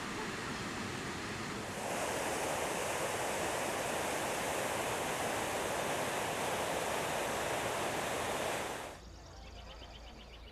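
Waterfall tumbling down rock ledges: a steady rush of water that swells about two seconds in and cuts off suddenly near the end.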